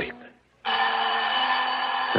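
Alarm clock sound effect ringing, starting suddenly after a brief silence and going on steadily.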